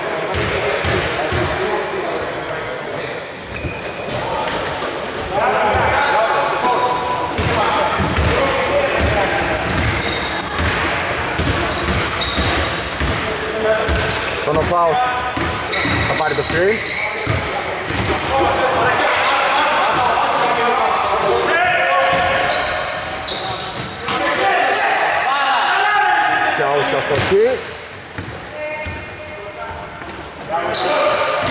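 Basketball game sounds in a large echoing hall: a ball bouncing on the wooden court again and again, short high squeaks of sneakers, and people's voices calling out.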